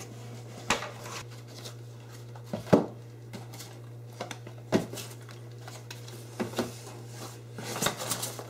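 Cardboard boxes and anti-static foam packing peanuts being handled: a handful of short knocks and rustles, the loudest nearly three seconds in, over a steady low hum.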